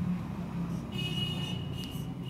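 Marker pen writing on a whiteboard: a stroke with a thin, steady high whine and faint hiss starting about a second in, over a low steady hum.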